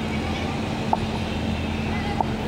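Steady low hum over outdoor background noise, with one short high beep about a second in.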